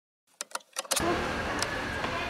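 A few short clicks, then from about a second in steady street noise with a car engine running.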